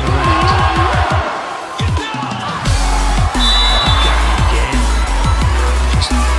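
Background electronic music with a heavy, steady bass beat; the low bass thins out for about a second and comes back in strongly a little past halfway through the first half.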